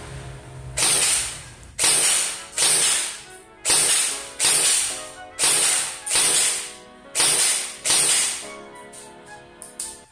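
G&G ARP9 3.0 airsoft electric gun firing nine single semi-auto shots, each about a second apart and fading over half a second, with a few lighter clicks near the end.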